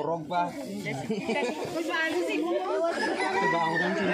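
Adults and children talking over one another, with no single voice standing out. A longer, higher drawn-out call runs through the middle of the chatter.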